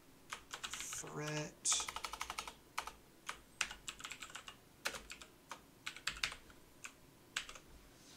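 Typing on a computer keyboard: irregular quick keystroke clicks, coming in short runs with small pauses. A brief voiced murmur comes about a second in.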